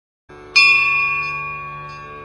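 A bell struck once about half a second in, its several clear tones ringing on and slowly fading, over a low steady drone that starts just before it.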